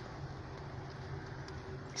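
Steady low hum of a car driving slowly, engine and road noise heard from inside the cabin.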